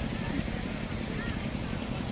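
Outdoor beach ambience dominated by wind buffeting the phone microphone in an uneven low rumble, with voices of people around mixed in.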